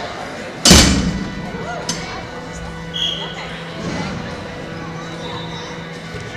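One loud thump a little under a second in that echoes briefly through the indoor arena, with smaller knocks a second or two later over a low steady hum.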